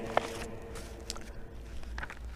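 A few faint clicks and light rustles from the pages and cover of a handheld service book, over a steady low room hum.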